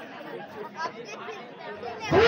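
Low, indistinct chatter of several voices, with no clear words.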